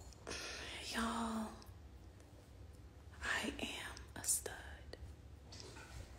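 A woman's voice, soft and half-whispered, in two short murmurs with pauses between them.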